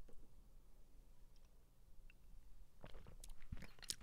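A very quiet pause with a faint low hum and a few soft mouth clicks, growing a little busier about three seconds in.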